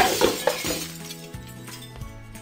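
A sudden crash with a few smaller clinks dying away after it, over steady background music.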